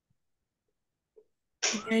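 Near silence, then a person starts speaking about a second and a half in.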